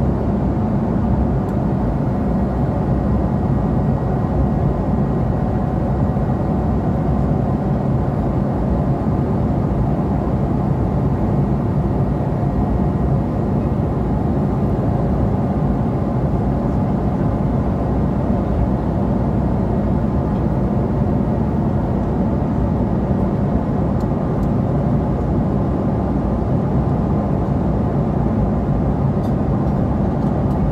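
Airliner cabin noise at cruising altitude: the steady low drone of the jet engines and airflow past the fuselage, unchanging throughout.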